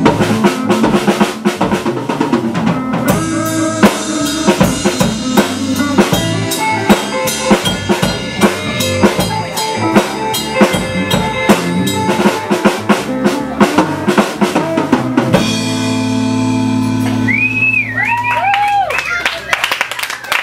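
Live rock band of electric guitar, bass guitar and drum kit playing loud, with busy drumming and cymbal hits. About fifteen seconds in, the drumming stops and held notes ring on, with a few short sliding high notes near the end.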